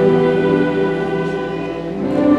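A school orchestra of violins and other bowed strings playing held chords, growing gradually softer.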